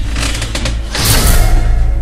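Horror-trailer soundtrack: a loud, steady low drone, with a noisy whoosh swelling about a second in.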